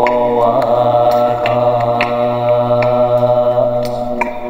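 Live-looped male chanting: a low drone held steady under a long chanted note, layered in several voices. A few sharp beatboxed clicks fall irregularly over it.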